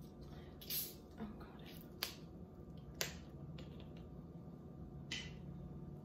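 A few faint, sharp clicks about a second apart, with two short hissing bursts, one near the start and one near the end.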